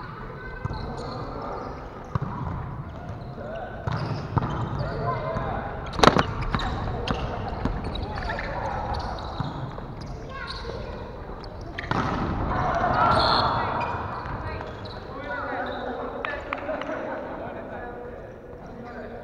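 A volleyball being struck during a rally in a large, echoing gymnasium, with one sharp, loud hit about six seconds in and a few softer hits around it. Players' voices call out throughout.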